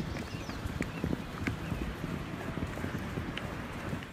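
Hoofbeats of several heavy draft horses running on grass turf: many irregular, overlapping dull knocks.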